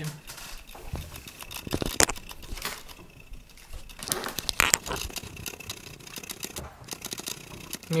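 Irregular clicks, knocks and short buzzes from a Canon EF 50mm f/1.8 lens's autofocus motor working through a Viltrox EF-M2 adapter on a Panasonic camera, mixed with handling of the camera, close on its microphone. The owner finds this lens's focusing noise too loud to shoot video with.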